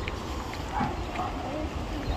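Faint voices in the background over a steady low wind rumble on the microphone.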